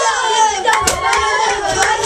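A group of children shouting and singing together over steady rhythmic hand-clapping, about three claps a second.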